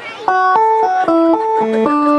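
Live band instruments play a quick melodic run of single notes after a brief hush in the music. The run ends on a held note.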